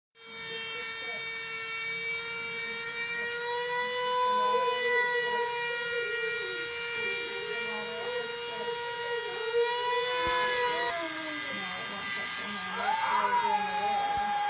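Small handheld rotary tool motor whining steadily as it cuts at an alloy metal fidget spinner stuck on a finger. Its pitch dips and wavers in the last few seconds.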